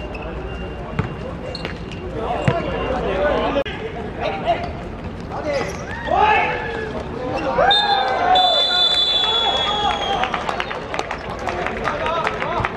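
Seven-a-side football on a hard court: the ball is kicked with sharp thuds about one and two and a half seconds in, then players shout through a goalmouth scramble and goal. A referee's whistle gives a long, slightly falling blast from about eight to ten seconds, signalling the goal.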